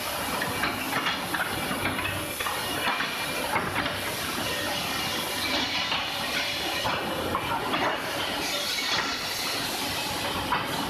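Woodworking factory din: woodworking machines and dust extraction running with a steady hiss, overlaid with frequent knocks and clatter of wooden blanks being handled.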